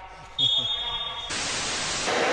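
A steady high-pitched electronic tone comes in about half a second in, then gives way near the end to a burst of hissing TV static, a static-noise video transition effect.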